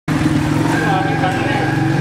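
Motorcycle engine idling steadily close by, with men's voices talking over it.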